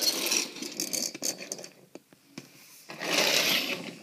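Die-cast toy cars being moved across a wooden floor: a rolling, rattling noise for the first second and a half, and again briefly about three seconds in.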